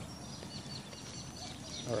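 Faint birds chirping in short calls over a low, steady outdoor background rumble.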